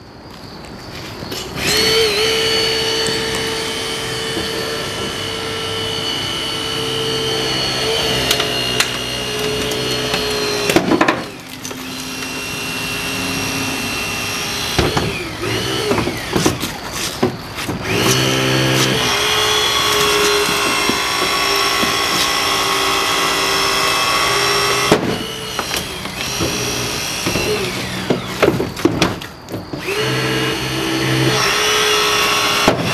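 Battery-powered hydraulic rescue cutter's motor and pump running steadily as it cuts through a car door's hinges, pausing briefly a few times between cuts.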